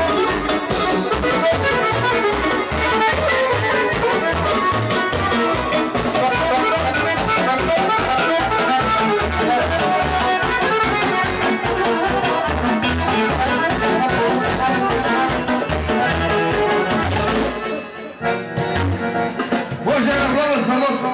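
Live band music, a drum kit and an electric keyboard playing an up-tempo melody over a steady drum beat. The music stops near the end, leaving crowd chatter.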